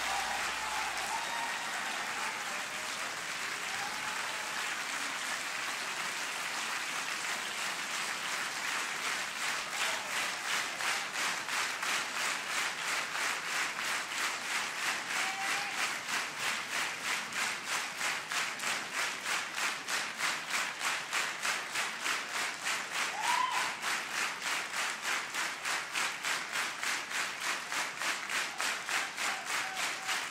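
Concert audience applauding after the show: loose, even applause that settles after about ten seconds into steady clapping in unison, about two claps a second. A single short rising whistle or shout rises above the clapping about two-thirds of the way through.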